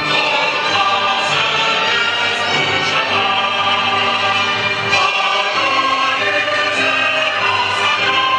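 An anthem sung by a choir with orchestral accompaniment: slow, long held notes at a steady, full volume.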